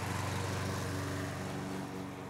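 GRIN walk-behind lawn mower's engine running at a steady speed while mowing.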